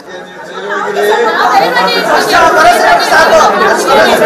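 Several people talking over one another at once. The jumble of voices is quieter in the first second, then grows loud and dense.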